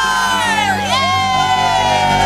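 A crowd cheering and shouting, with several voices in long falling cries, over music with steady low held notes.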